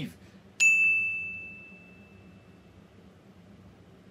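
A single bright ding, a subscribe-button notification-bell sound effect, sounds about half a second in and rings out, fading away over about two seconds.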